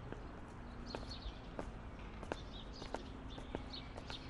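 Footsteps going down stone steps: sharp clicks at an even walking pace, about three every two seconds. Small birds chirp in the background.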